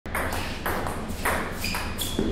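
Table tennis ball being hit back and forth in a doubles rally: about four sharp clicks of ball on paddle and table, roughly half a second apart, the last with a short ringing ping.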